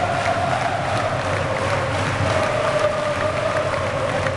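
Large basketball arena crowd singing a chant together, a loud sustained chorus that wavers slightly in pitch, with scattered claps.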